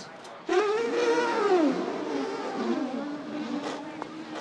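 A man blowing a comic mouth noise with his lips pressed against a glass dish. It starts about half a second in as a loud, buzzing honk that slides up and down in pitch, then holds a steady low note until near the end.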